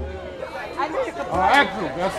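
Several people's voices chattering over one another, with no drumming.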